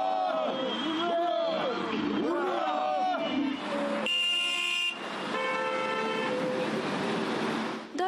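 Car horns blowing as the retro-car column sets off: a short, higher horn blast about four seconds in, then a longer, lower blast held until near the end. Before them a loud voice with drawn-out pitches is heard.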